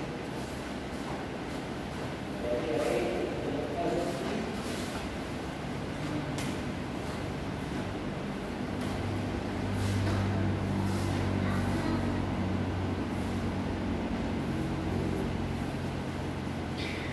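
Sharp snaps and slaps of a taekwondo uniform and bare feet on foam mats during a solo form, heard as scattered short cracks over a steady low hum that grows louder in the middle.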